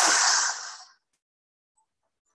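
Sound effect of storm waves crashing: a loud rushing noise that dies away just under a second in, leaving silence.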